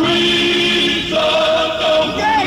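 Men's gospel choir singing a held chord, moving up to a higher sustained note about a second in.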